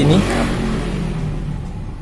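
A vehicle going past, its rushing noise fading away over about two seconds, with a steady low hum underneath.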